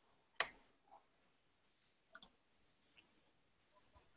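A few faint clicks from working at a computer: a sharp click about half a second in, a softer one near one second, and a quick double click just after two seconds, over near silence.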